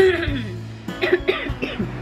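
A woman coughing: a loud cough at the start, then a few more short coughs about a second in, the cough of a person sick with a cold or fever. Music plays underneath.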